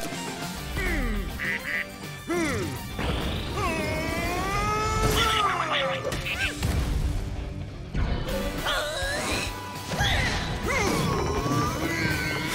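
Wordless cartoon character voices: cries and squawks that slide up and down in pitch, over background music, with a few hits.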